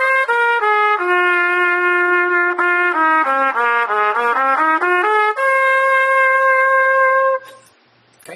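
Trumpet playing the G minor pentatonic scale one note at a time. It steps up to a top note, comes back down past the starting note into the low register, climbs again, and ends on a long held note that stops shortly before the end.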